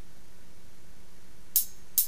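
Steady background hiss, then near the end two short hi-hat taps about half a second apart: the start of a count-in before the band comes in.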